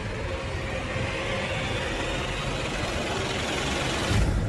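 Documentary sound-effect drone: a steady rushing hiss with a faint held tone underneath.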